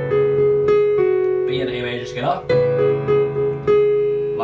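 Piano played with both hands: a right-hand melody starting on B and stepping down through A to repeated G-sharps, back up to B about halfway through, over a held F-sharp minor chord in the left hand.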